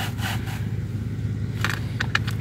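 Plastic HVAC blend door actuator being slid out of the heater box housing, with short scrapes and clicks of plastic on plastic near the start and again near the end. A steady low hum runs underneath.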